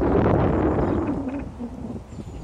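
A vehicle passing on the motorway above, swelling to a peak in the first second and then fading, with a low tone that drops slightly in pitch as it goes by.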